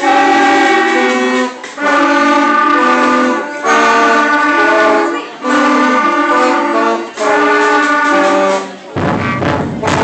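A fourth-grade school band of clarinets and flutes playing a tune in phrases of held notes, with a short break about every two seconds. Near the end the playing gives way to a noisier sound.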